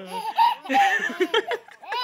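Nearly three-month-old baby laughing: a few squealing laughs, then a quickening run of short, breathy laughs in the second half.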